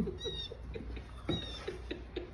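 A golden retriever whining in short, high-pitched whimpers, a couple of thin squeals among softer low whines.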